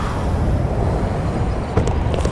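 A loud, steady low rumble, with a couple of sharp knocks near the end.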